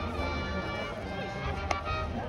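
Stadium cheering music, with brass-like notes and voices chanting along over the crowd. Near the end comes one sharp smack as the pitch reaches the plate.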